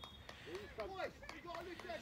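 Faint men's voices calling and shouting at a distance, in short scattered bursts, from players and people on the touchline.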